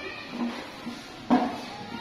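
Two brief high-pitched vocal calls over a low murmur, the second louder and sudden, about a second and a half in.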